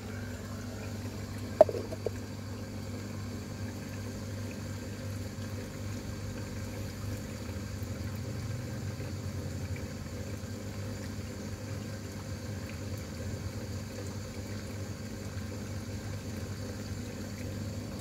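Water pump running with a steady low hum; a single sharp knock about one and a half seconds in.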